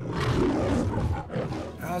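The MGM studio logo's lion roar: a lion roaring twice, starting suddenly out of silence, with the second roar shorter than the first.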